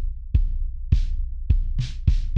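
Electronic drum beat of a song's intro: a kick drum thumping about twice a second over a low bass hum, with brighter snare or clap hits between the kicks.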